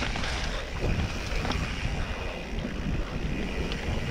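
Mountain bike rolling slowly over a dirt trail: wind buffeting the camera microphone, with the tyres on dirt and scattered small knocks and clicks from the bike rattling over bumps.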